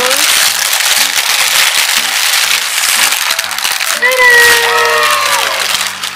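Thin plastic bag rustling and crinkling as it is pulled open and off a plastic tub, over background music. About four seconds in, the rustling gives way to a short pitched voice-like sound whose pitch glides.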